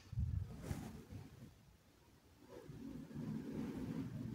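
Faint low rumbling background noise in two stretches, with a brief rustle about three-quarters of a second in; unwanted noise that is apologised for straight after.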